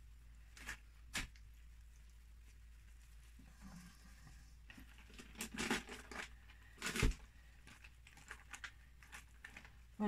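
Faint, scattered rustling and crinkling as gloved hands shape resin-soaked cloth over a mold on newspaper, with a few sharper clicks, the loudest about seven seconds in.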